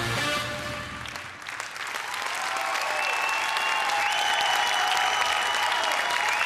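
Show music with a heavy bass beat cuts out about a second in, and theatre audience applause builds and carries on, with some music tones still held over it.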